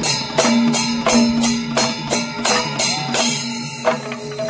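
Panchavadyam temple ensemble playing: maddalam barrel drums struck by hand and ilathalam hand cymbals ringing, in sharp strikes several times a second.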